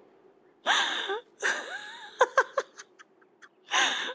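A woman laughing breathily in a few short, airy bursts, with a quick sharp breath near the end.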